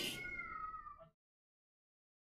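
Kirtan music with harmonium fading out. A faint high two-note ring, sinking slightly in pitch, lingers for about a second before the sound cuts to silence.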